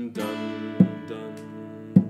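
Steel-string acoustic guitar strummed with single strums, each chord left to ring: three strums, at the start, just under a second in, and at the end.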